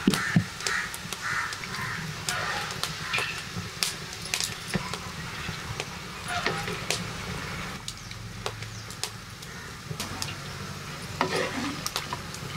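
Clinks and knocks of a ladle and cooking pot as boiled sprouted moth beans are scooped and drained into a terracotta bowl, with birds calling in the background.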